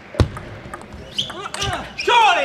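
A sharp knock with a low thud about a fifth of a second in, then lighter table tennis ball clicks, and a player's shout, rising and falling in pitch, that begins near the end.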